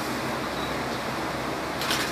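Steady background hiss with a faint low hum, the room tone of a small room with air conditioning, during a pause in speech; a short sharp noise comes near the end.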